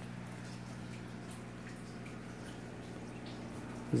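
Small vivarium waterfall trickling and dripping over slate stones, with a steady low hum underneath.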